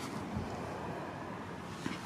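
Steady outdoor background noise: an even hiss with no distinct events, a faint low thump about half a second in.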